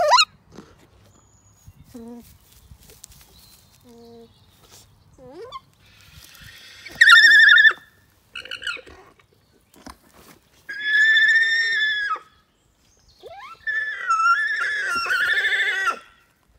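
Alpacas humming: several high-pitched, wavering hums, one short and loud about seven seconds in, another a little after eleven seconds, and a longer run of hums over the last few seconds, with fainter low hums earlier.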